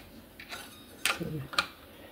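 A few light metallic clicks as a 3/16-inch Allen key is worked into an electric guitar's truss rod nut at the headstock.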